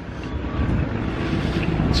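A motor vehicle's low rumble, growing steadily louder as it comes closer.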